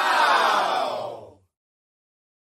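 Short outro sound effect over an end card: a dense, many-toned sound sliding downward in pitch, cutting off about a second and a half in.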